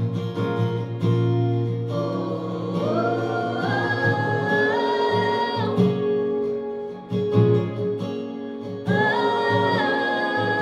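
Live country song: a woman singing long, held notes over a strummed acoustic guitar.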